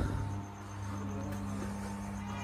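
Steady electrical hum of a 110 kV substation's power transformers: a deep, even drone with a weaker higher overtone above it. A faint, fast high-pitched pulsing runs over the top.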